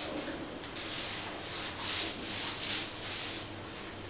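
A quick series of rubbing strokes by hand against a surface, about two strokes a second, loudest around the middle.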